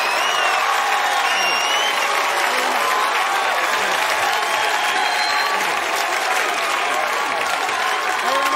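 A large studio audience applauding steadily, with high whoops and whistles rising and falling over the clapping.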